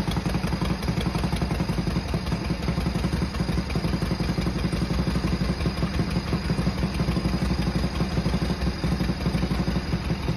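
1959 Harley-Davidson Panshovel's air-cooled V-twin engine running steadily at idle with an even, rapid pulse of firing strokes, just fired up for its first start after the rebuild.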